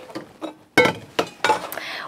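Stainless steel mixing bowl set down on a countertop with a sudden ringing clank, followed by a couple of lighter knocks.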